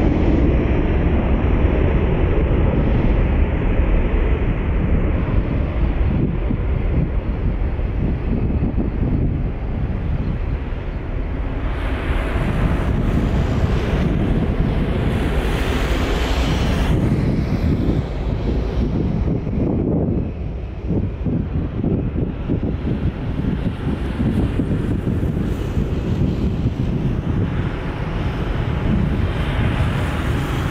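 Embraer KC-390's twin turbofan engines at takeoff power, a steady jet noise that slowly fades as the aircraft climbs away, heavily buffeted by wind on the microphone.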